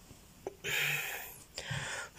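A person's breathing close to the phone's microphone: a small click, then two noisy breaths, the first about 0.8 s long and a shorter one near the end.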